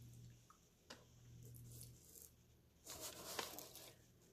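Near silence: quiet room tone with a faint low hum, a faint click about a second in, and a short rustling noise about three seconds in.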